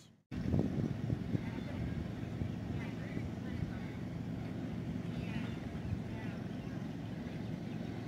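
Steady low outdoor rumble, with faint voices in the distance.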